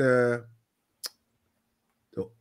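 A man's voice drawing out one word, then a single short, sharp click about a second in, against a faint steady hum.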